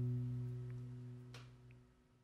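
Final chord of an acoustic guitar ringing and fading away to near silence, with a faint click about a second and a half in.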